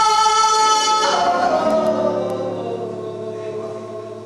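Woman singing flamenco, holding one long loud sung note with her guitarist's accompaniment; about a second in the note ends and the guitar's strings ring on, fading away.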